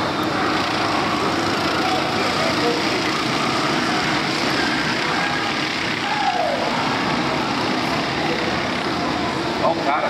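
Many racing kart engines running together at high revs as the pack passes through the bends, their overlapping notes blended into one dense, steady buzz. About six seconds in, one engine's pitch falls as a kart slows.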